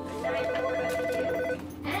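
Telephone ringing with one electronic, rapidly pulsing ring lasting about a second and a quarter: an incoming call.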